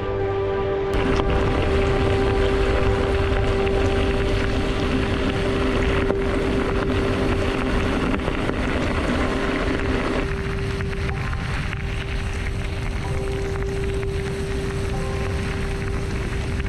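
Wind rushing over the microphone and bicycle tyres rolling and crackling over a gravel track while riding, under background music holding a steady tone.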